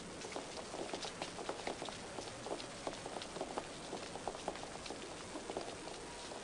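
Irregular soft footsteps and small clicks, a few each second, over a steady hiss.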